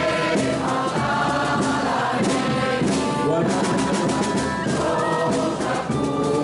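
A large crowd of amateur singers singing together in chorus, many voices at once.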